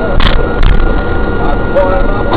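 Low engine and road rumble inside a moving car, recorded by its dash cam, with a voice or music wavering faintly over it. Two short clicks come within the first second.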